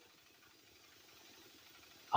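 Near silence: the sound drops almost to nothing between two stretches of a man's amplified speech.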